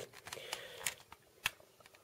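Faint handling noise from fingers on a palm sander's plastic housing and slide switch, with a couple of light clicks, the sharpest about one and a half seconds in.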